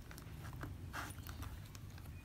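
Faint handling sounds of a leather wallet: a few small ticks and rustles as fingers fumble one-handed at its metal zipper pull.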